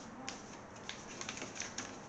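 Faint, irregular light clicks and taps from handling a trading-card deck and its cardboard and plastic packaging, several small clicks close together in the second half.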